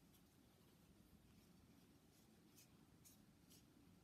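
Near silence, with a few very faint, brief scratchy rustles of a metal crochet hook drawing cotton yarn through stitches.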